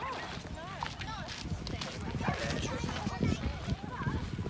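Indistinct voices of children and adults talking in the background.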